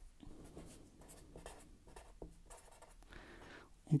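Felt-tip pen writing on paper: faint, irregular scratching strokes as a short formula is written out by hand.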